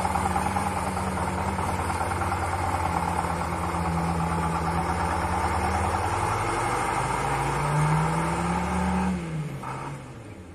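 Vintage Krupp Büffel truck's diesel engine pulling away under load. The revs climb in the later seconds, then drop suddenly about nine seconds in, and the engine grows quieter as the truck moves off.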